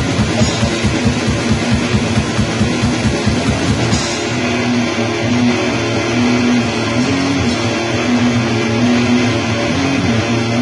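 Black metal band playing: distorted electric guitar riff over fast drumming. About four seconds in, the drum pattern thins out while the riff carries on.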